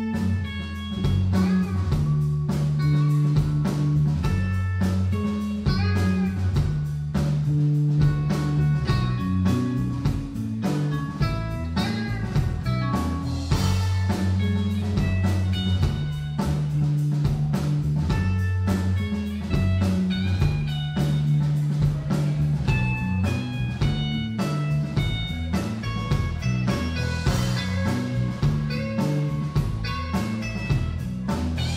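Live rock band playing electric guitar, bass guitar and drums. All of it comes back in together right at the start after a split-second gap.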